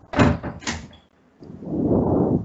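Two sharp knocks about half a second apart, followed by a longer, muffled noise that swells and fades near the end.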